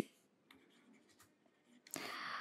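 Faint taps of a stylus writing on a tablet, in an otherwise near-silent room, with a short scratchy pen stroke starting right at the end.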